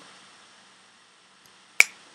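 A single sharp click near the end, ringing briefly, heard as the presentation slide is advanced.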